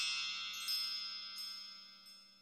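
Shimmering chime tones ringing out and fading away, with two light sparkling strikes a little under a second apart, a magical sparkle effect on a logo reveal.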